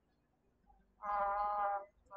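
A person's drawn-out hesitation sound, 'uh…', held at a steady pitch for just under a second, starting about a second in.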